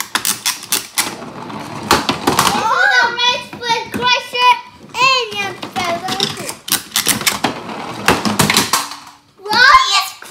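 Rapid clicking of toy cars' plastic wind-up mechanisms as they are pressed and pushed along a wooden tabletop to rev them up. A child's high-pitched voice joins in the middle and again near the end.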